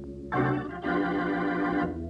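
Organ playing a musical bridge of sustained chords that comes in just after the start and shifts chord a couple of times.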